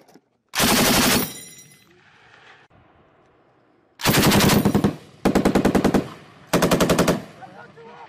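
An M240B 7.62 mm machine gun firing four short bursts of about a second each, roughly ten rounds a second. Each burst trails off in a short echo.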